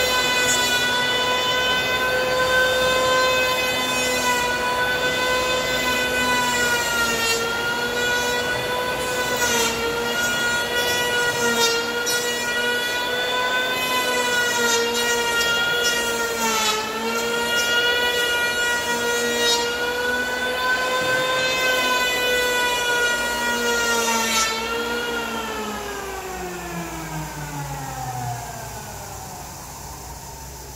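Electric hand planer running with a steady high whine, its pitch sagging briefly now and then as the blades bite into the pine slab. About 25 seconds in it is switched off and the whine falls steadily as the motor spins down.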